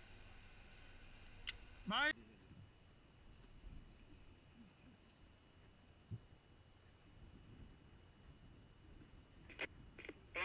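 A short shout about two seconds in, then faint low rumble with a single knock around the middle and a brief faint voice near the end.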